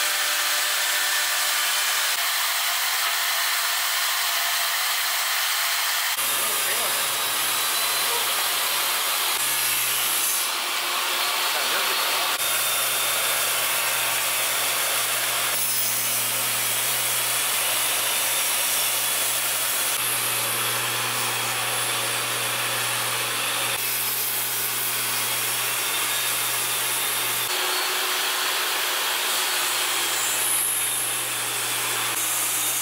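Woodworking machines running and cutting wood, in short segments that change abruptly every few seconds: a CNC router spindle at work, then a table saw cutting through a hardwood board.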